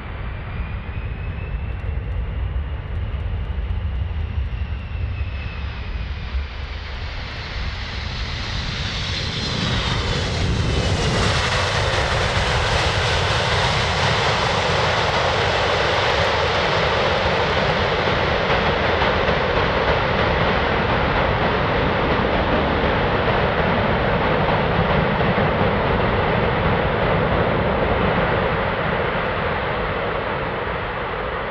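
A C-17 Globemaster III's four Pratt & Whitney F117 turbofans during a landing: a turbine whine bending in pitch as the aircraft passes, then about ten seconds in the engine noise jumps to a loud, steady rush as reverse thrust is applied on the rollout, easing off near the end.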